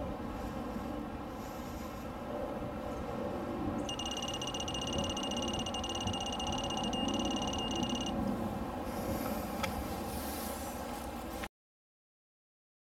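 Digital torque wrench sounding a steady, high-pitched electronic alert tone for about four seconds, starting about four seconds in, with a couple of brief breaks. The tone signals that the bolt has reached the set torque. A steady background hiss runs under it.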